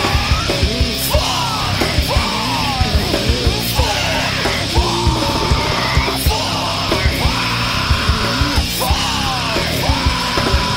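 Nu metal/rapcore song with yelled vocals over a loud band and a busy drum beat.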